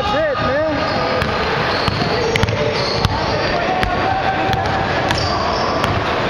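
Basketball bouncing on a hardwood gym floor, a string of sharp, irregularly spaced bounces, with sneaker squeaks near the start and players' voices echoing in the hall.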